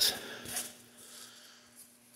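Quiet room tone with a faint steady low hum, after a man's voice trails off at the very start.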